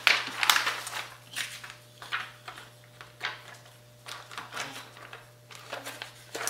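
Thin plastic laminating pouch being handled, giving irregular crinkling and rustling crackles as it is pulled from the stack and flexed. The crackles are loudest at the very start and come more sparsely after that.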